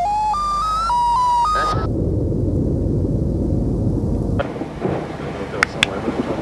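A short run of steady electronic tones stepping up and down in pitch, then a dense low rumble, and in the last second or so a few sharp cracks over a rough, crackling background.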